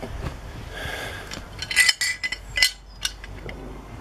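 Metal parts of a home-made puller, a steel plate with its bolt and screws, clinking and clattering as they are handled against the engine. A run of sharp clinks comes in the middle.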